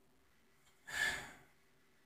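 A man's single short, soft breath about a second in.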